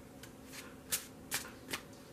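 A deck of tarot cards being shuffled by hand: about five short, quiet card flicks, the loudest about a second in.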